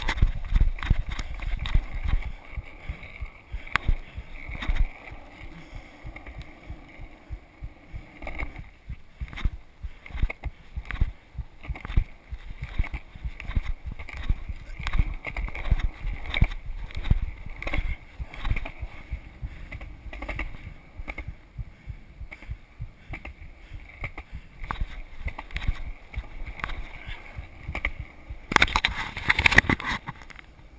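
Skateboard wheels rolling over asphalt and concrete: a rough, steady rumble broken by frequent clicks and knocks. A louder rush of noise comes in just before the end.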